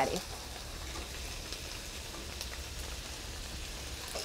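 Ground beef sizzling steadily in a nonstick skillet over a gas burner, browned and no longer pink.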